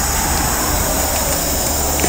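Steady hum and whir of running workshop machinery, an electric motor with a low hum under an even hiss, unchanging throughout.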